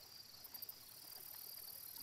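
Faint, steady chirping of crickets, a night-time insect ambience.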